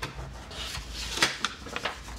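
Stylus tip scratching across the iPad screen as it draws a series of shading strokes: one longer stroke, loudest a little past the middle, then a few short quick ones.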